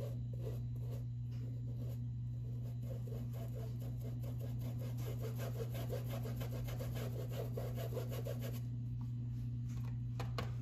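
Paintbrush rubbing paint onto stretched fabric in rapid short back-and-forth strokes, several a second, densest through the middle and stopping about a second before the end. A steady low hum runs underneath.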